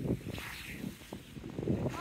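Low, steady wind rumble on the microphone, with small sea waves washing against a rocky shore.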